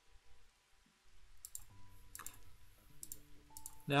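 Computer mouse clicking: three quick pairs of sharp clicks, each pair under a second after the last, over a faint steady electronic hum.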